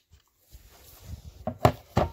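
Preset 10 N·m torque wrench being turned on a valve-adjuster collar: soft handling noise, then a few sharp metallic clicks about a second and a half in. The loudest click is the wrench releasing at its set torque.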